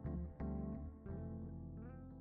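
Background music: a melody of pitched notes, struck every half second or so, over a sustained low bass line.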